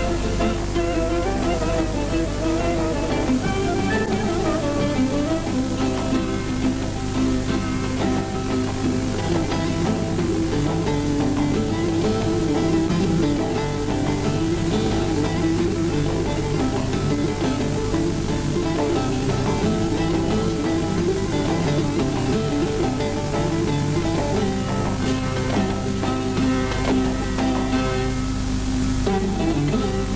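An ensemble of long-necked saz lutes plucking a Kurdish folk melody together in an instrumental passage, steady and continuous.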